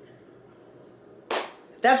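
A pause in a woman's talking with faint room tone, broken about a second and a half in by one short, sharp breathy burst from her, then her voice starting again near the end.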